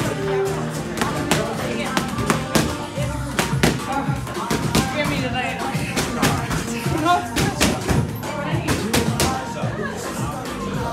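Music with voices, cut through by irregular sharp thumps and smacks of boxing gloves hitting heavy bags and focus mitts.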